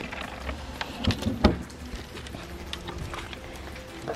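Light background music, with a few sharp knocks and clunks about a second in, the loudest near the middle, as items are shifted in a cooler while a plastic water gun is lifted out.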